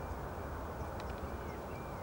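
Small birds chirping, a few short high calls and clicks, over a steady low outdoor background noise.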